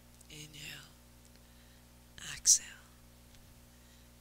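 A woman breathing audibly twice, paced to a yoga movement: a breath about half a second in, then a sharper, louder breath about two and a half seconds in.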